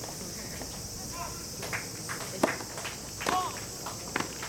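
Steady high-pitched drone of cicadas, with a few sharp knocks of tennis balls, the loudest about two and a half seconds in, and brief distant shouts.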